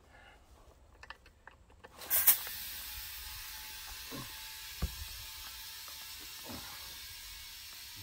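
Compressed air from an air compressor hose hissing into a tractor tire through the valve stem. It starts suddenly about two seconds in and then runs steadily, with air escaping past the unseated bead. There is one short knock near the middle.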